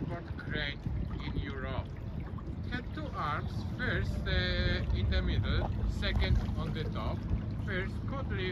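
A person's voice talking over the steady low rumble of a tour boat under way on the river, with wind on the microphone.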